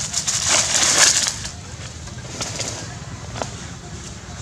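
Monkey scampering through dry fallen leaves: a loud burst of leaf rustling and crackling about half a second in, lasting about a second, then a few scattered crackles.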